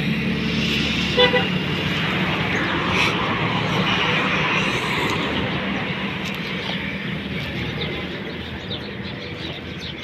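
Road traffic noise with a short vehicle horn toot about a second in; the traffic noise grows quieter over the last few seconds.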